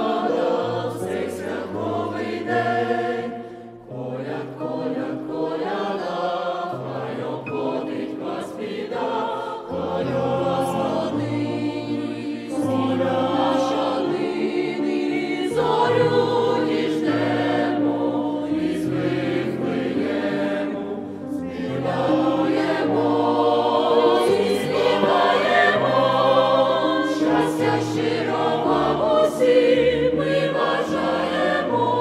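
Choir singing a Ukrainian Christmas carol (koliadka) over instrumental accompaniment with a bass line that steps between held notes. The music briefly drops back twice, between phrases.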